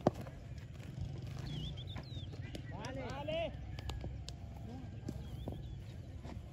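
Open-air sports-field ambience: a sharp knock right at the start, then a distant voice calling out about halfway through. Short bird chirps come and go over a steady low rumble of wind.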